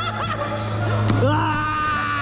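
Voices in a large gym hall, with a basketball bouncing once on the court about a second in, over a steady low hum.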